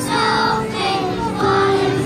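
A group of young children singing together as a choir, in held notes that change about every half second.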